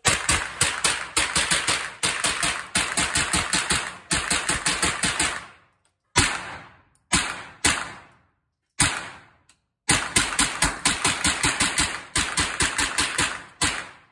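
AR-15-style semi-automatic rifle fired rapidly in long strings of about five shots a second, with a pause in the middle broken by a few single shots; each shot echoes briefly off the walls of the indoor range.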